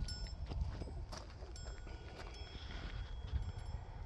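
Faint outdoor ambience: a steady low rumble with scattered light taps and a few thin, high ringing tones, each lasting about a second.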